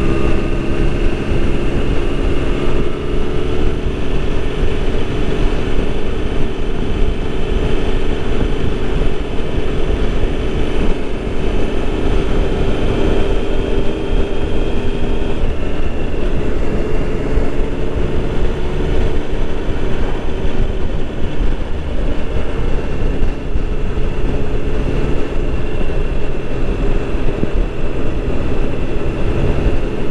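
Motorcycle engine running at a steady cruise, heard from a bike-mounted camera with wind rumble on the microphone. The engine note eases slightly lower about halfway through.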